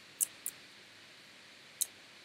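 Computer mouse clicks: two quick clicks near the start and a third shortly before the end, over faint room hiss.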